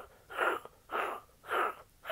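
A man laughing softly under his breath: three breathy, unvoiced puffs about half a second apart.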